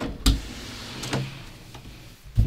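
Wooden interior door being opened: two sharp clicks from the latch and handle, the first about a quarter second in and the second about a second later.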